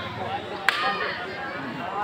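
A single sharp slap of hand on bare skin a little under a second in, as the kushti wrestlers grapple, over the steady chatter of the surrounding crowd.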